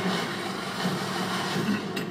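Trailer soundtrack played into the room: a steady rushing rumble like a subway train running, with no music or dialogue standing out.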